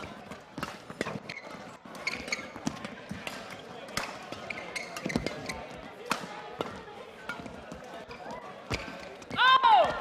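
Badminton rally: rackets striking the shuttlecock at irregular intervals, with shoes squeaking briefly on the court floor. Near the end there is a loud "Oh!" as the rally ends.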